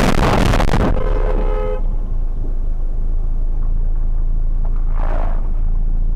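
Car collision recorded by a dashcam: a burst of crash noise with a car horn sounding for the first couple of seconds. Then a steady low engine rumble, with a brief swell of noise about five seconds in.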